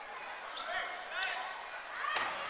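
Players' shouted calls about halfway through, over the sounds of sneakers squeaking and stepping on a wooden gym floor.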